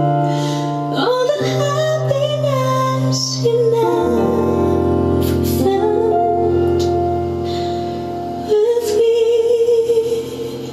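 A female singer performing a slow ballad over piano accompaniment, holding long notes with vibrato over sustained chords that change every few seconds.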